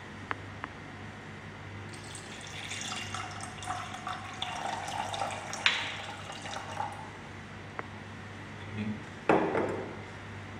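Distilled water poured from a glass graduated cylinder into a glass beaker, a trickling fill lasting about five seconds with a sharp glass clink partway through. A short knock follows near the end.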